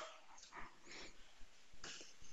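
Near silence: faint room tone with a few soft noises and one faint click near the end.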